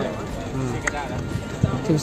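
Voices speaking over background music, with Thai narration resuming near the end.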